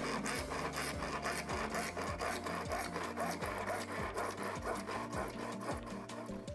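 Handsaw cutting through a white plastic water pipe, in a steady run of quick, even back-and-forth rasping strokes.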